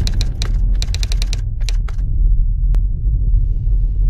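Keyboard-typing sound effect: a quick run of sharp key clicks in the first two seconds as a web address is typed out on screen, then one lone click about three seconds in, over a deep steady rumble.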